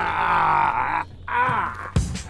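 A person's voice making a drawn-out wordless groan, then a second shorter one that falls in pitch, over a steady low hum.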